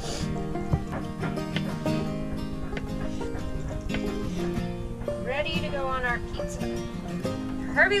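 Instrumental background music playing steadily, with faint taps of a paring knife cutting Spam on a wooden board.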